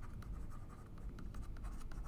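Stylus writing on a tablet: a quick, irregular run of small scratches and taps.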